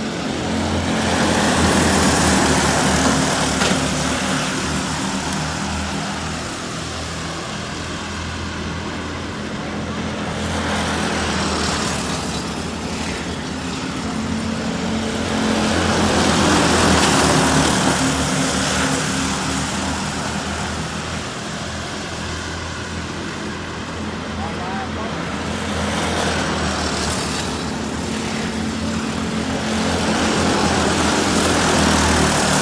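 A pack of racing go-kart engines running together on a lap of the track. The sound swells loudly several times as karts come by close and fades in between.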